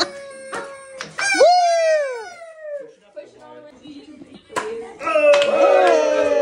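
A confetti popper goes off with a sharp pop right as the countdown ends, followed by a couple of smaller clicks. People then whoop and cheer, with one long falling "wooo" about a second and a half in and more cheering near the end.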